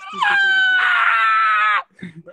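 A person's long, high-pitched scream, held for about a second and a half with its pitch sliding slowly down, then cut off.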